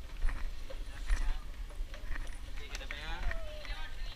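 Footsteps of several people on a hard outdoor staircase, short footfalls about every half second, with a person's voice briefly near the end.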